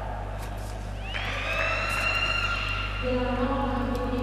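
A long, high whistle-like tone starts about a second in, glides up and then holds for about two seconds. About three seconds in, a lower steady buzzer-like tone sounds as the second technical time-out is signalled at 16 points, over steady sports-hall ambience.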